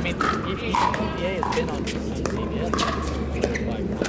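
Pickleball paddles hitting a hard plastic pickleball back and forth in a fast rally at the net: a series of sharp pops, over background voices.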